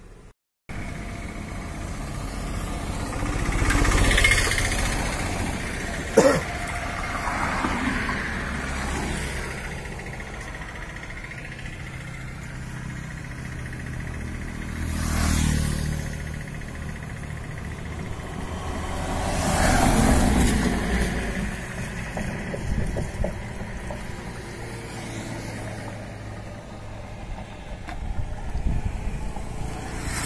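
Road traffic passing close by, three vehicles swelling up and fading away, about 4, 15 and 20 seconds in. A single sharp knock comes about 6 seconds in.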